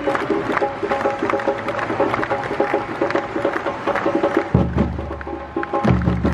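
A supporters' samba drum section (bateria) playing a fast percussion rhythm, with a stand crowd singing a chant over it. Deep bass drums come in strongly about four and a half seconds in.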